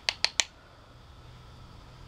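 Three quick, sharp plastic clicks in the first half second from handling an eyeshadow compact and makeup brush, then only faint room hum.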